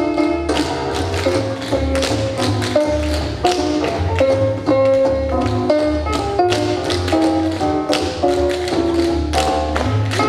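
A group of tap dancers' tap shoes striking a hard floor in quick, rhythmic steps, over music with a bass line.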